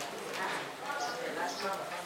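People's voices in a crowded hall, with scattered small clicks.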